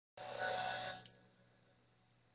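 The closing moment of a song on FM radio: a final sustained chord that dies away within about a second, leaving a faint steady hum.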